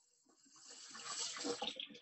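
Tap water running into a stainless steel sink and splashing over a tied-up t-shirt as it is rinsed of indigo dye. The sound cuts in about a quarter of the way in and stays faint.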